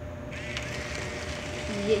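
Model train car running along the track, a steady whirring hiss that starts about a third of a second in, over a faint steady hum.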